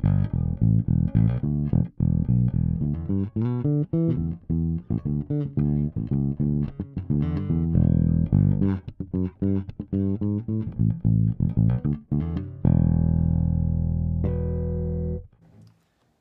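Fender Jazz Bass fitted with Delano pickups and a Delano preamp, played fingerstyle with every control set flat: a run of plucked notes, then two long ringing notes near the end that are cut off sharply about a second before the end.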